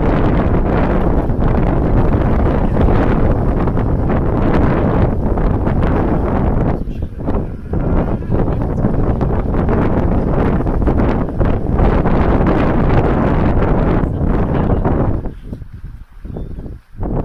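Wind buffeting the microphone on an open boat: a loud, steady rushing rumble that drops briefly about seven seconds in and again near the end.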